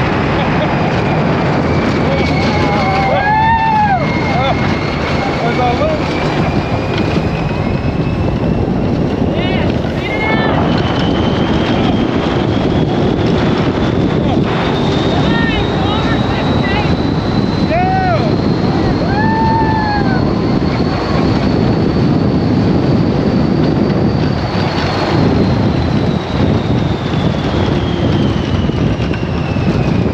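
Wind rushing over the microphone of an open Test Track ride vehicle on its high-speed outdoor run, with a thin whine from the vehicle that climbs slowly in pitch for about twenty seconds and falls again near the end as it gathers speed and slows. A few short cries from the riders come through the wind.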